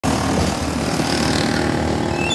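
Motorbike engine running on the road with steady traffic noise.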